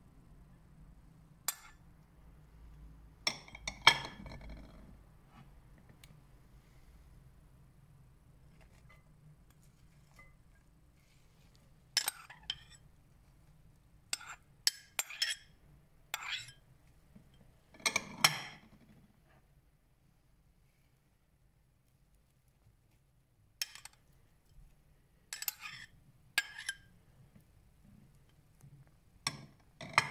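Ceramic bowls clinking against the rim of a large salad bowl as chopped vegetables are tipped in: scattered sharp clinks, some single and some in quick clusters, with quiet gaps between.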